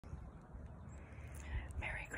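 Low, steady rumble on a phone microphone, with a woman's voice starting faintly near the end.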